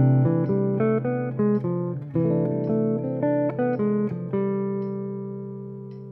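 Clean archtop jazz guitar playing a single-note line that mixes C major 6 and D diminished arpeggios: an even run of notes at about four a second, ending on a long held note that rings and slowly fades.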